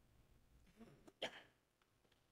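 Near silence: room tone, with a brief faint sound from a person's throat, like a small hiccup or cough, about a second in.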